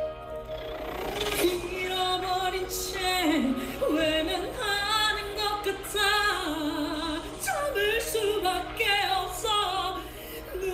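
A man singing a classical-crossover vocal line in a high, operatic voice with wide vibrato, coming in about a second in and going on in phrases with short breaths between them.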